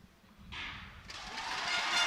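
Near silence with the sprinters set, then the starting gun of a 100 m race fires about half a second in. After it the stadium crowd's noise swells steadily louder.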